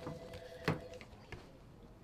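Sheets of paper handled on an office desk, with one sharp knock about two-thirds of a second in and a few lighter taps. A faint steady two-note tone runs through the first second.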